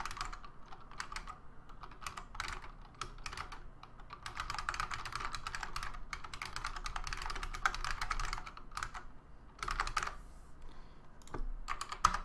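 Typing on a computer keyboard: scattered keystrokes at first, then a fast, dense run of keystrokes about four to eight seconds in, a short pause, and a few more keystrokes near the end.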